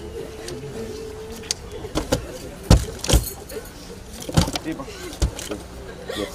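A hand trowel scooping earth and tossing it into a grave: several sharp knocks and scrapes at irregular intervals over a murmur of voices.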